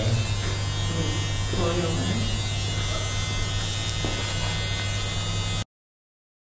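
Electric hair clippers buzzing with a steady low hum, under faint voices; the sound cuts off suddenly near the end.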